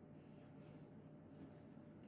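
Near silence, with faint, soft rubbing of a metal crochet hook working through cotton yarn as stitches are made.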